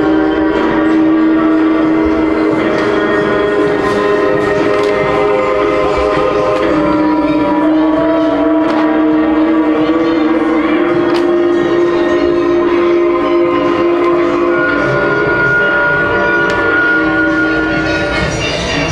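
Sound effects from a towering light-up Halloween animatronic: a loud, sustained, droning chord of held notes that shift in pitch every few seconds.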